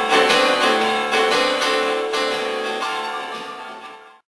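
Piano-sound keyboard playing chords struck about twice a second, with no singing, fading out steadily toward the end.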